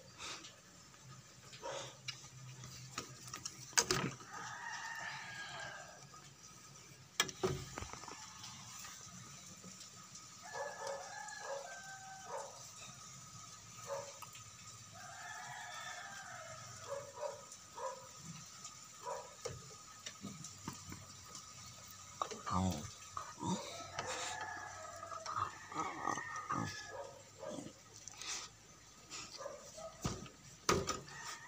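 Roosters crowing several times in the background, each call lasting a second or two, with a couple of sharp knocks near the start.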